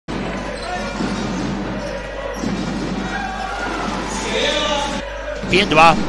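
A basketball dribbled on an indoor hardwood court, with voices carrying in the arena hall. A commentator's voice comes in loudly near the end.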